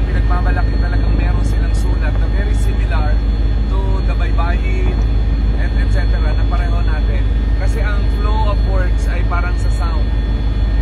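Helicopter cabin noise in flight: a loud, steady rumble from the engine and rotor, with a steady whine of several held tones above it.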